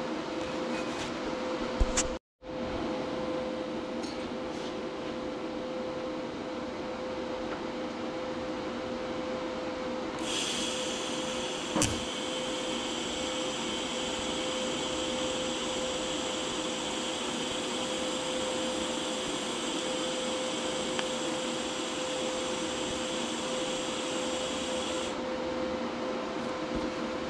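A steady shop hum runs throughout; from about ten seconds in, a TIG welding arc runs for roughly fifteen seconds as a steady high hiss, then cuts off. The arc is a tack weld on thick steel with the welder turned up to about 92 amps.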